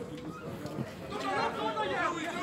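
Indistinct voices calling and chattering, mostly in the second half; no words can be made out.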